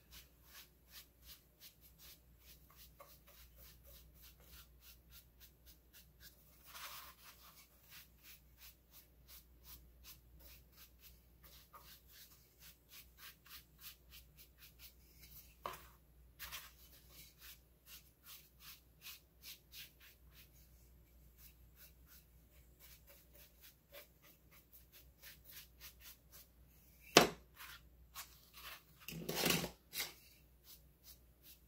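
Dry bristle brush dabbing and stroking baking soda onto a painted plastic pumpkin: a faint, quick run of soft brush strokes, about three a second, with a single sharper knock near the end.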